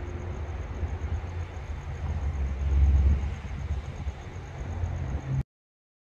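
Low, steady rumble of a freight train of hopper cars on the track, swelling a little midway, then cut off abruptly about five seconds in.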